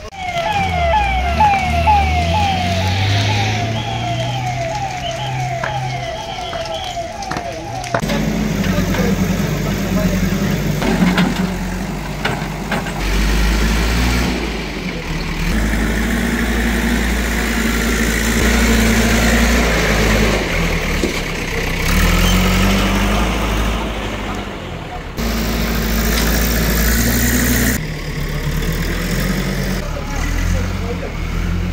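Emergency vehicle siren yelping in quick repeated rising sweeps, about two a second, for the first several seconds. It then cuts off sharply to a steady low engine rumble with noise over it.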